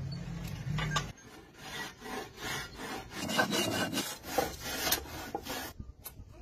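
A hand-driven iron boring bar scraping and cutting the inside of a wooden log as it is hollowed into a dhol shell, in repeated strokes about two a second.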